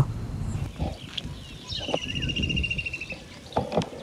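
A bird's rapid trill, one high run of quick repeated notes lasting about a second and a half and falling slightly in pitch, over a low rumble. A couple of short knocks come near the end.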